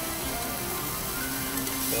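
Background music with steady held notes over the faint sizzle of prawns frying in olive oil in a stainless steel pan. A few light clicks come near the end.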